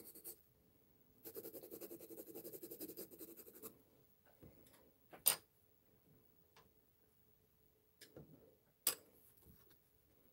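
Pencil shading on paper: a quick run of short strokes lasting about two and a half seconds, then a few isolated light clicks and taps, the sharpest one about halfway through.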